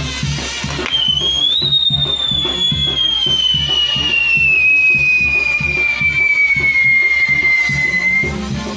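A whistling firework on a burning castillo's spinning star wheel sounds about a second in: one long high whistle that rises briefly, then slides slowly down in pitch as its charge burns. Band music with a steady beat plays loudly underneath.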